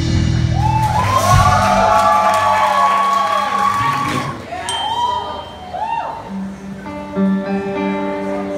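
A live rock band's held chord breaks off, followed by audience whooping and cheering in the hall for several seconds; about six seconds in, the band starts playing again with guitar and sustained notes.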